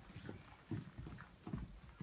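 Faint, soft footsteps: a few low thumps spaced a little under a second apart, as children walk across the floor.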